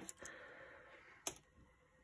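Faint handling of small rusted metal charms in a glass jar, with one short clink a little over a second in.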